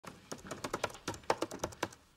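Typing on a laptop keyboard: a quick, irregular run of key clicks, about eight a second.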